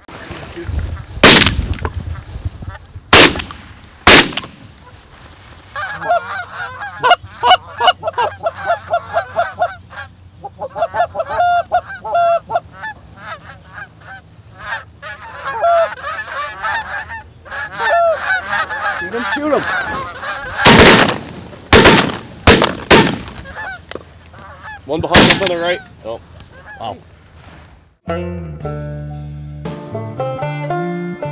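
Shotgun shots at a flock of Canada geese: three quick shots near the start, then geese honking steadily for about fifteen seconds, then another string of four or five shots. Banjo music comes in near the end.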